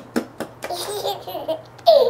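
Baby laughing: a few short breathy bursts, then a run of giggles, loudest near the end.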